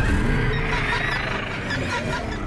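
A dragon's drawn-out screeching roar, a film creature sound effect, loudest about a second in, over orchestral score music with a steady low drone.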